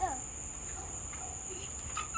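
Steady high-pitched chorus of crickets, one continuous unbroken trill.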